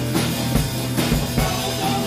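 A small band playing a rock song live: acoustic guitar and electric bass over a steady beat.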